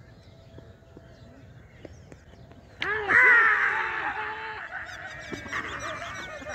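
Cricket players' loud shouts breaking out about three seconds in, several voices overlapping and then tailing off: the fielding side celebrating as the batsman is bowled, stumps knocked over.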